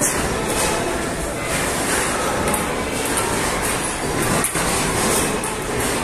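A table tennis rally: a ping-pong ball clicking off the paddles and the table a few times, over a steady loud background din in the hall.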